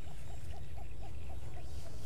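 A small animal calling: short chirping notes repeated evenly, about four a second, over a low steady background noise.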